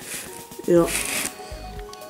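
Brief rustling of a paper brochure being handled, in short soft bursts.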